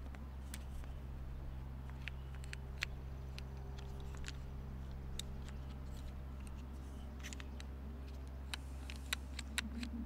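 Light, scattered clicks and taps of a small handcrafted wooden puzzle with a metal piece being turned and pressed in the hands, over a steady low background hum. The clicks come more often near the end.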